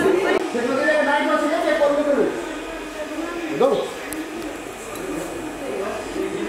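People's voices talking and calling out, with a short spoken exclamation about three and a half seconds in.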